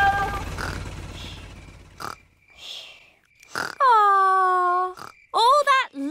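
Low rumble of a cartoon helicopter fading away over the first two seconds, then cartoon pig characters' voices: one long falling vocal sound followed by short, choppy vocal sounds near the end.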